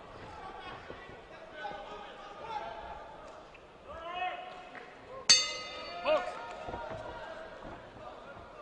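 Boxing ring bell struck once about five seconds in to start the first round, a sharp clang that rings on for over a second. Voices murmur in the arena hall behind it.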